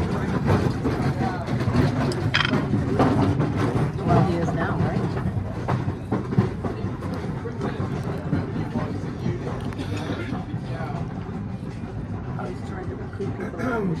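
Busy restaurant background: other diners' voices murmuring over a steady low rumble, with a few small clicks and knocks from food and plate handling.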